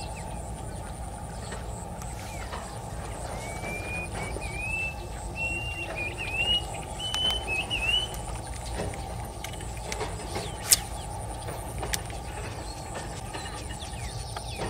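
Outdoor ambience over a steady low rumble: a bird gives a run of short rising chirps from about three to eight seconds in, with a faint high whine beneath. A single sharp click near eleven seconds is the loudest moment.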